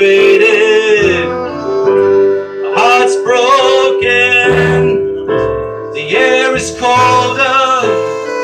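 A live acoustic folk trio plays a slow ballad: keyboard chords, bowed violin and plucked upright bass together, with a wavering melody line in short phrases.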